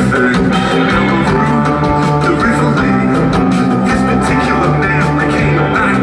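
A live rock band playing loudly and steadily, with electric guitar and bass.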